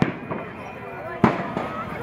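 Two sharp bangs over the chatter of a crowd, one right at the start and a louder one about a second later.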